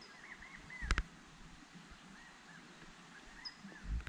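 A bird calling faintly in the background in a series of short arched chirps, about four a second, in two runs. There is a single sharp click about a second in.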